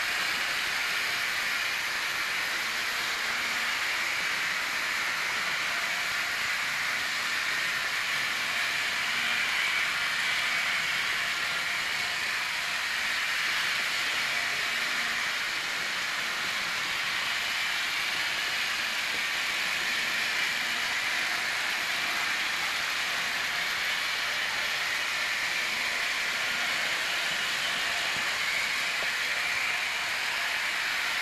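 Trix Express model trains running on the layout's track: a steady whirring, rolling noise that stays even throughout, with no separate rail clicks standing out.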